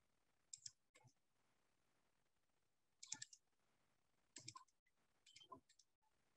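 Faint clusters of computer mouse clicks, several quick clicks at a time, heard about five times over near silence.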